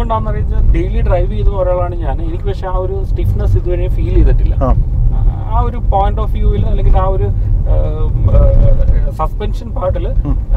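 A man talking, heard inside a moving car's cabin over the steady low rumble of road and engine noise from the Ford EcoSport diesel.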